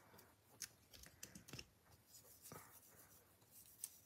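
Near silence with a few faint, light clicks and taps of small nail-art tools being handled.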